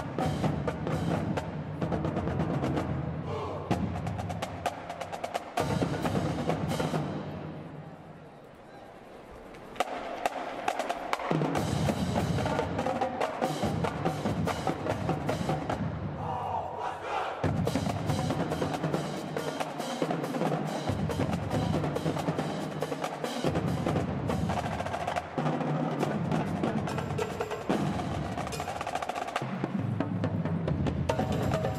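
A marching band drumline of snare drums, tenor drums, bass drums and cymbals plays a drum cadence with dense, rapid stick strokes and sections of pounding bass drums. The playing softens around eight seconds in and comes back loud near ten seconds.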